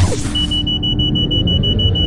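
Logo-intro sound effect: a sudden loud hit, then a steady low rumble with a high, rapidly pulsing beep tone over it.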